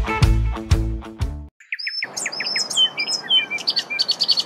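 Intro music ends about a second and a half in; after a brief gap, birds start chirping and singing in quick, repeated high notes over a faint outdoor hiss.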